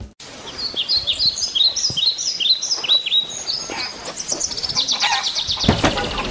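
Bird chirping: a run of short, falling whistled calls about twice a second, then a quick trill of rapid notes. A knock or thump comes near the end.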